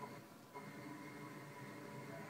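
Faint background music from a television show, with steady held tones and no speech.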